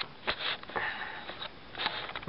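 Handling noise from a camera being moved and set in place by hand, with scattered rustles and small knocks, and a short breathy hiss close to the microphone a little under a second in.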